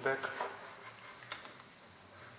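A single short click about a second and a half in, as the plastic tail light unit is handled against the car body during refitting.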